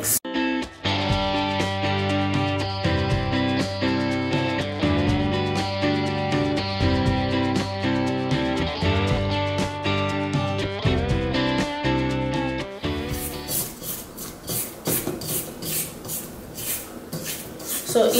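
Background music with a plucked-string melody, which cuts off abruptly about thirteen seconds in. It gives way to a rhythmic noise, a few strokes a second, from a KitchenAid stand mixer beating cookie batter.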